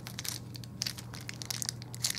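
Clear plastic wrapping crinkling as fingers pick and pull at a taped, stuck-together packet of slides, in irregular small crackles.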